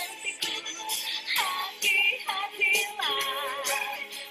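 A song playing: a sung vocal line, with wavering held notes, over a backing track with percussion.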